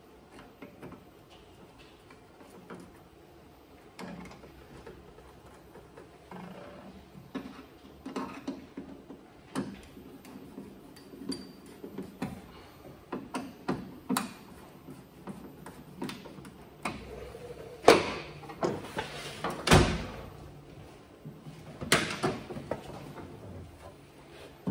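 Hand work with a screwdriver on a steel ute tailgate: irregular clicks, scrapes and knocks of the tool, screws and panel against the metal. They grow busier part way through, with a few louder metallic knocks in the second half.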